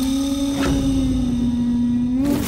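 Dramatic background score: one sustained low synth note held steady, bending slightly in pitch, with a faint brief accent about half a second in.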